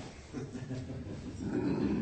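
Soft, low laughter.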